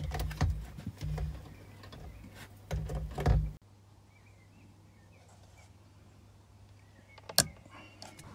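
Knocks and clicks of a steering-wheel airbag module being handled against the wheel of an Audi S5, over a low hum. A little over three seconds in the sound cuts off suddenly to near quiet with faint chirps, and a single sharp click comes near the end.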